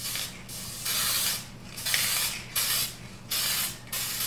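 Krylon webbing (marbleizing) spray aerosol can being sprayed in short hissing bursts, about six in four seconds. This is the lighter-spraying of the cans.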